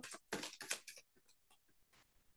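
A deck of tarot cards being shuffled by hand: a few short, soft papery taps in the first second.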